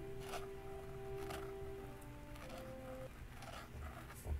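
Quiet background music with held notes that change every second or so, with faint short scratches of a steel Zebra Comic G nib on paper as looped letters are written.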